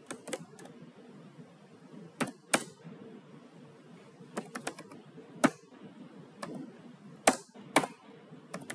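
Computer keyboard keys clicking as code is typed: scattered single keystrokes and short runs of keys, irregular, with pauses between them.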